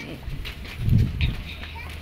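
Indistinct voices with irregular low thumps from footsteps and handling of a camera carried by someone walking, loudest about a second in.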